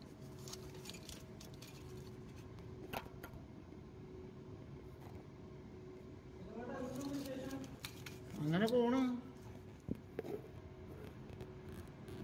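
Small clicks and rattles of wiring and connectors being handled at a steam sterilizer's heater terminals, over a steady low hum. Two short bursts of a voice are heard just past the middle.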